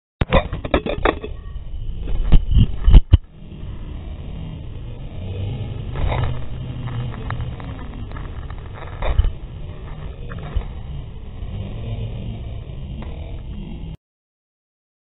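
GoPro in its waterproof housing being dropped and handled: a cluster of loud knocks and thumps in the first three seconds, then a muffled low rumble through the case with a few more knocks as the camera is taken out of the housing.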